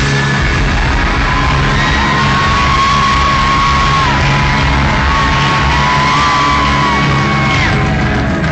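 Rock band playing live and loud, with electric guitar over a full band; a long held melody line steps between a few notes.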